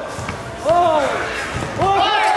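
Short wordless shouts from players on an outdoor basketball court, one about half a second in and another near the end, with a basketball thudding on the concrete between them.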